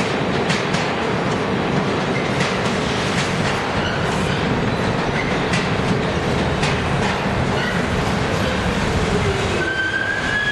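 New York City subway train running through an underground station, a steady rumble with wheels clicking over rail joints every second or so. Near the end a whine falls in pitch as the train slows.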